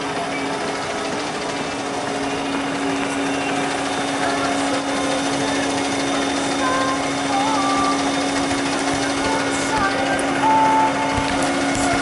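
Concrete mixer truck running while parked, a steady hum at one pitch throughout. Snatches of distant voices come and go over it.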